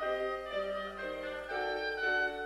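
Clarinet playing a slow melody over grand piano accompaniment, its notes changing about every half second.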